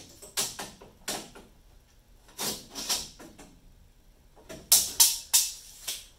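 A run of sharp knocks on the wooden camper frame, about eight in all, irregularly spaced in three groups, with the loudest three close together near the end.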